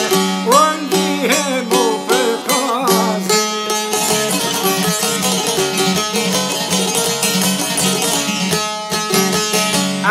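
Albanian folk music on çifteli and sharki, long-necked plucked lutes. A wavering melody with heavy vibrato fills the first three seconds, then gives way to a fast, dense plucked instrumental passage over a steady low drone.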